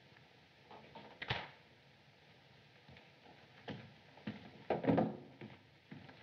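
A few soft knocks and scuffs of people moving about a room, one pair about a second in and a closer cluster in the second half, over the steady hiss of an old optical film soundtrack.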